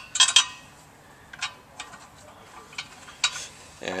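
Metal motor bolt clinking against the pump's motor flange as it is fed through and threaded in by hand: a quick cluster of clicks about a quarter second in, then a few scattered light ticks.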